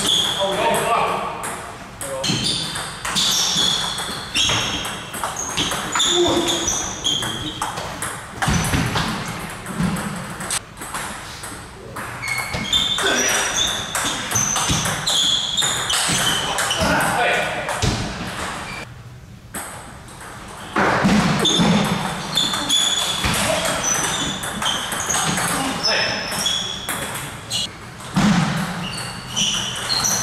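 Table tennis ball clicking rapidly back and forth between bats and table through rallies, each hit a short sharp tick, in a reverberant sports hall. Voices carry in the background, with a brief lull between points about two-thirds of the way through.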